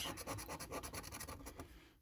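A coin scraping the silver coating off a scratch card: rapid scratching strokes of metal on card that die away just before the end.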